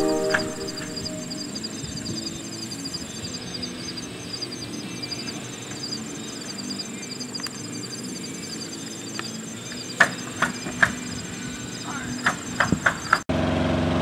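Insects chirping in an even, rapid high-pitched pulse, several chirps a second, over a faint low background hum. A few sharp clicks come near the end before the sound cuts off suddenly.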